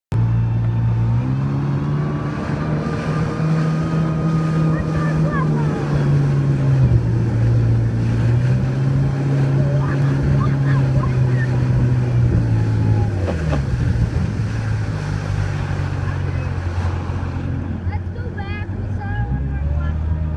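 A boat's motor running, its pitch rising about a second in and then stepping down several times as the throttle is eased, with wind and water noise over it.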